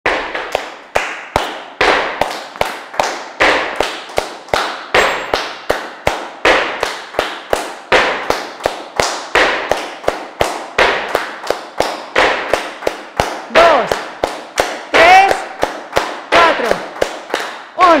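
Flamenco palmas: a group clapping hands in a steady rhythm of sharp, echoing claps, about two to three a second. Over the last few seconds a voice calls out above the clapping.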